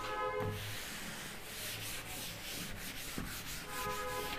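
Chalkboard duster rubbing across a blackboard in repeated wiping strokes, erasing chalk writing.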